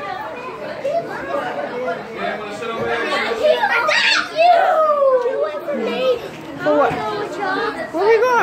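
Children's and adults' voices chattering and calling out at play, overlapping. About halfway through there is one long cry that falls in pitch.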